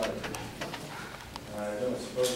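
Indistinct speech: short, soft bits of voice in the meeting room, with a brief held vocal sound near the end.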